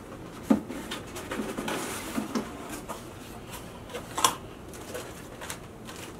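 Cardboard box being handled and opened, with rustling of packaging and plastic wrap, and sharp knocks about half a second in and again about four seconds in.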